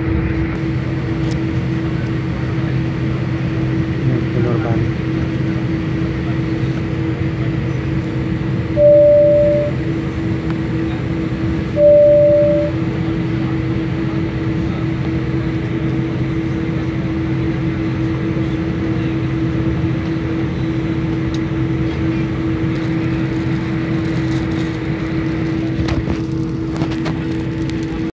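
Steady airliner cabin hum with a constant low drone while the plane taxis. A single cabin chime sounds twice, about three seconds apart, each a short tone that fades quickly.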